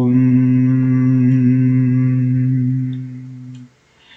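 A man chanting a long, sustained "om" on one low, steady pitch as a vocal meditation, the closing hum of an ah–oh–om sequence. It fades away and stops shortly before the end.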